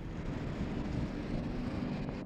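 Steady outdoor background noise picked up by an open microphone, an even low rumble with hiss.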